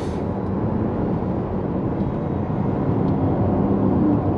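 In-cabin sound of a Mitsubishi Outlander PHEV's 2.4-litre four-cylinder petrol engine running under acceleration in Power drive mode, over tyre and road noise. The steady low drone grows a little louder near the end as the engine revs rise.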